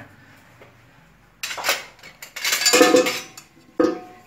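Metal cookware clattering: a metal stockpot and utensils knocked together in a few ringing clanks after a quiet first second and a half, with one sharp clank near the end.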